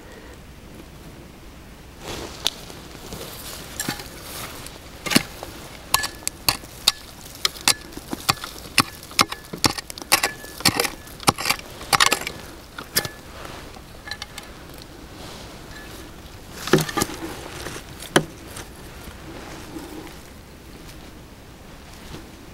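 Hand digging tool chopping and scraping into gritty soil and small stones: a run of sharp knocks and scrapes, thickest in the middle, with a couple more strokes later on.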